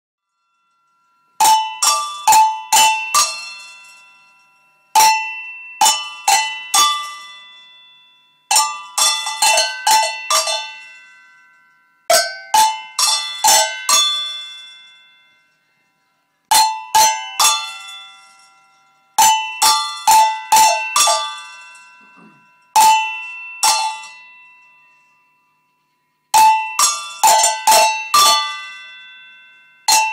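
Several cowbells of different pitches struck by hand in quick runs of four to six hits. Each run is left to ring and fade before the next one comes, every three to four seconds. The first run starts about a second and a half in.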